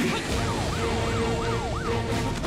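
A siren sounding in fast rising-and-falling sweeps, about three a second, over a low steady hum.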